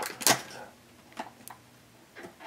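Small plastic Shopkins figures being stacked by hand: a short handling sound just after the start, then two faint clicks a little past a second in as a figure is set on top of the stack.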